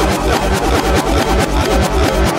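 Psytrance track played in reverse: a fast, even pulsing bass beat under backwards synth lines.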